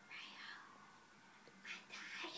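Faint whispered voice, a breathy sound just after the start and another near the end.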